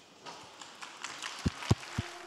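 Three low thumps about a quarter second apart in the second half, picked up by a handheld microphone, typical of the microphone being handled or knocked as its holder moves.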